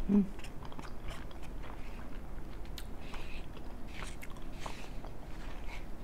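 A person chewing mouthfuls of soft chicken enchiladas, with faint scattered wet mouth clicks and smacks, after a short hummed "mm" at the start.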